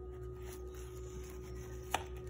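Faint steady low hum, with one sharp click of a spatula against a glass baking dish near the end.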